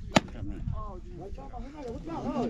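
One sharp lash of a rope whip (chicote) striking the back of a kneeling man, right at the start, one of the ritual 'soba' lashes given to a first-time bull herder. Voices talk around it.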